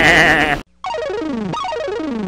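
A puppet character's high, wavering laugh, cut off about half a second in. After a short gap, a logo jingle starts: a run of quick falling synthesizer tones, about three a second.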